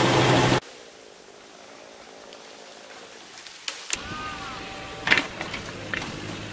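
Short clips cut together: a brief loud rush of noise, then a quieter steady hiss, and from about four seconds in a small farm tractor's engine running steadily, with a few sharp knocks.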